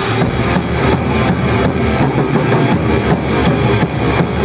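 A metal band playing live: electric guitar and bass over a drum kit, with drum and cymbal hits keeping an even beat of about three a second that quickens near the end.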